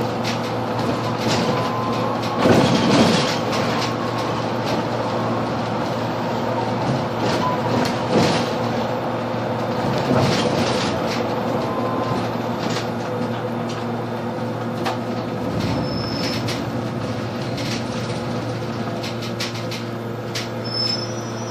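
Interior of a Solaris Urbino 18 III Hybrid articulated bus under way: a steady drivetrain hum made of several even tones over road noise. Short rattles and knocks from the body come through, with the loudest clatter about two and a half seconds in.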